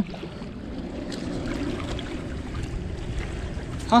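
Steady wind and choppy river water lapping against a broken concrete bank, with a few faint ticks.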